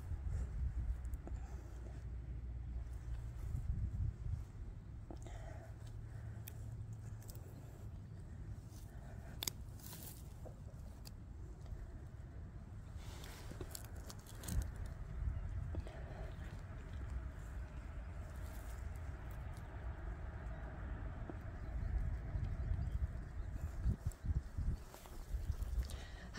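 Hands digging in garden soil and wood-chip mulch and tugging at a deep plant root: soft scraping and crumbling of dirt with scattered small clicks and crackles, over a steady low rumble.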